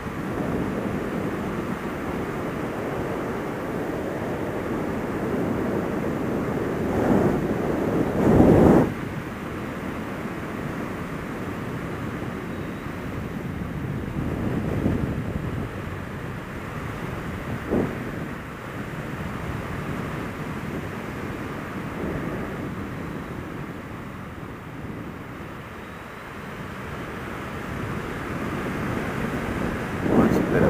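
Wind rushing over the camera microphone while the Suzuki SFV650 Gladius's V-twin runs underneath at road speed. A brief louder buffet comes about eight seconds in.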